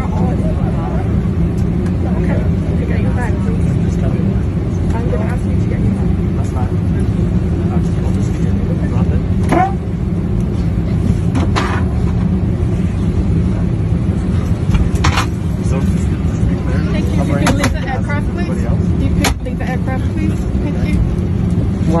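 Steady low rumble of an airliner cabin, with indistinct voices of passengers and crew and a few short knocks.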